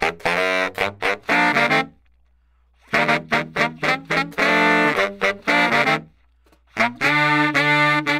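Four baritone saxophones playing in harmony: three phrases of short, separate notes, with brief pauses about two and six seconds in.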